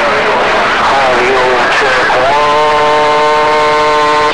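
CB radio receiver hissing with heavy static under a garbled voice coming over the air, then a steady held tone with several overtones from about two seconds in.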